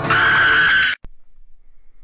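A loud burst of static-like noise from the tail of a glitch-effect video intro cuts off suddenly about a second in. It gives way to faint night insects trilling at a steady high pitch.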